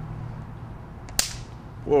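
A single sharp crack, about a second in, of a high-voltage spark from a homemade taser built from a disposable camera's flash circuit, discharged onto a hammer head.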